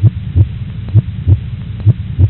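Low double thumps in a heartbeat rhythm, about one pair a second, over a low steady hum.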